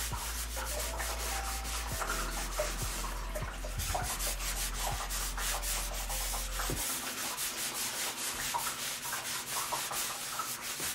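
A towel rubbed back and forth over an oil-painted stretched canvas: a steady run of quick scrubbing strokes.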